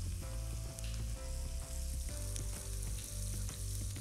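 Village sausages sizzling as they sauté in their own rendered fat in a pan, with the rasping strokes of tomato halves being grated on a grater.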